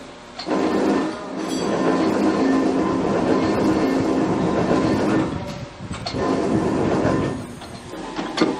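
Chicago 8-foot, 55-ton mechanical press brake (model 68-B, mechanical clutch) running: a loud machine run with a steady hum, dipping briefly about five and a half seconds in before picking up again.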